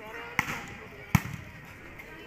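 Two sharp slaps of hands striking a volleyball, about three quarters of a second apart, the second louder, with spectators' voices in the background.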